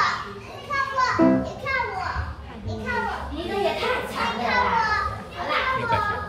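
Young children's voices chattering and calling out, high-pitched and overlapping.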